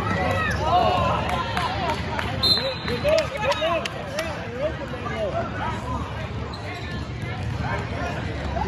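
Basketball court sounds: sneakers squeaking on the hardwood floor in many short chirps and a basketball bouncing, over the chatter of spectators in the gym.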